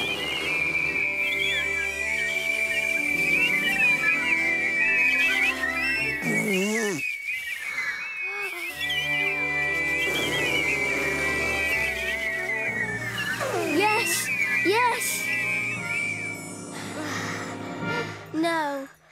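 Several cartoon characters whistling together on one long held high note, wobbling and warbling around it, over gentle background music. The whistle breaks off about six seconds in, starts again about three seconds later and stops a little before the end.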